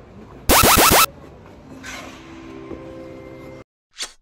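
A loud, half-second electronic sound effect about half a second in: several tones that drop quickly in pitch, one after another. A quieter steady hum follows, then the sound cuts off abruptly near the end.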